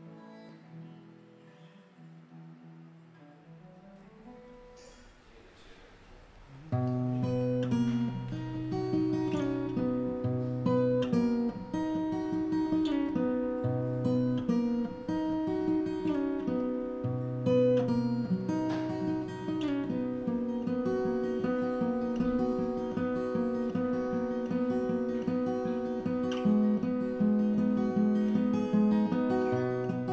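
Steel-string acoustic guitar with a capo, fingerpicked. It is faint for the first several seconds, then comes in loud about seven seconds in with a repeating picked pattern over a moving bass line.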